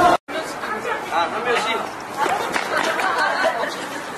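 Several people talking and chattering over one another, after a brief dropout to silence just after the start.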